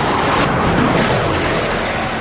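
Bugatti Veyron's quad-turbocharged W16 at full throttle near its top speed, heard as a loud rush of engine and wind noise as the car sweeps past. It is loudest about a second in, then eases off.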